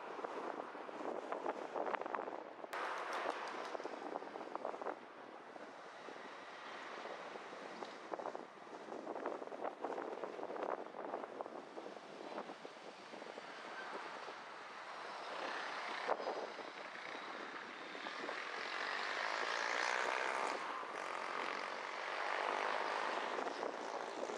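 Road and wind noise from a car driving along a city street: a steady rushing noise that swells somewhat later on, with a few brief clicks.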